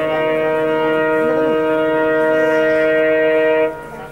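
WDP-4D diesel locomotive's multi-tone air horn sounding one long, loud, steady chord that cuts off near the end.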